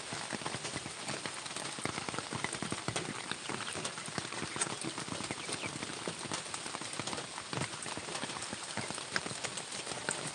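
Steady rain pattering on surfaces, a dense spatter of small drop ticks.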